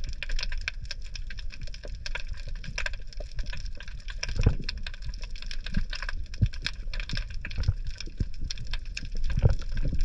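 Underwater crackling of a rocky reef: a dense, continuous patter of small clicks over a low rumble, with a few deeper thumps about four and a half seconds in and near the end.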